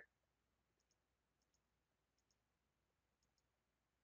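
Near silence, with about four faint double clicks of a computer mouse spread through it.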